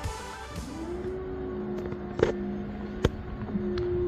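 Background music fading out at the start. Then a steady machine hum that slides up in pitch briefly as it comes up to speed and holds level, with a couple of sharp clicks.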